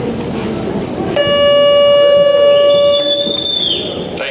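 Arena time-limit horn sounding one steady electronic note for a little over two seconds, starting suddenly about a second in: the signal that the herd-work run's time has expired. A second, higher tone rising in pitch overlaps it near the end.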